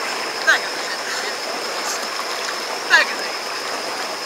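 Steady rush and splash of water churned behind a slow-moving Sea-Doo GTX personal watercraft, with a thin high whine running throughout. Two short high-pitched voice calls cut in, about half a second in and about three seconds in.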